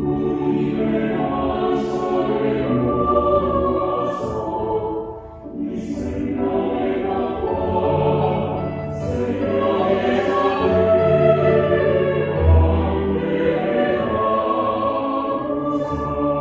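Mixed four-part (SATB) choir singing Korean lyrics with piano accompaniment. The choir breaks briefly about five seconds in, then carries on.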